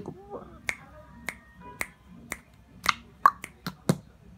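Finger snapping: about nine sharp, single snaps at roughly two a second, coming faster near the end.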